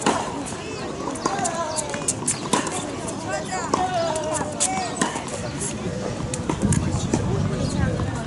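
Tennis balls struck by rackets in a practice session: sharp pops at irregular intervals, several a few seconds apart, with people talking in the background.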